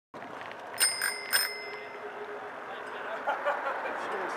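Bicycle bell rung three times in quick succession, each ring a sharp ding whose tone hangs on and fades over about a second. Voices of people talking start up near the end.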